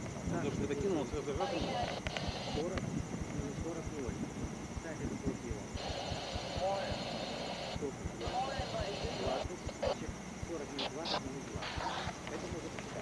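Muffled, indistinct voices over rumble and knocking on the camcorder microphone. A high buzzing switches on and off several times, longest in the middle.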